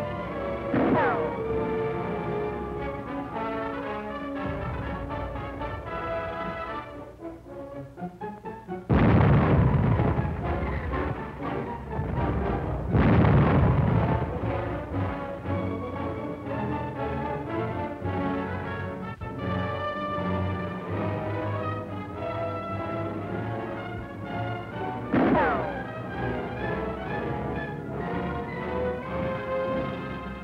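Orchestral film score with brass, over which two loud explosions hit about nine and thirteen seconds in. Brief falling whistles, each with a sharp bang, come near the start and again about twenty-five seconds in.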